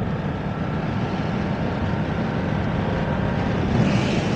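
The 895 cc parallel-twin engine of a BMW F900R running steadily while cruising at about 70 km/h, heard from the rider's seat with a steady rush of wind and road noise.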